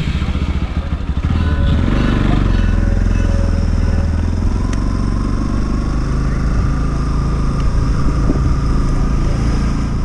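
Motorcycle engine running steadily as the bike rides along, heard from on the bike. A thin steady whine sits above the engine note in the second half.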